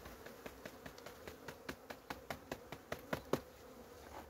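Honeybees buzzing with a steady hum from an opened hive of an active wintering colony. Many small irregular clicks and taps sound over it, loudest a little after three seconds in.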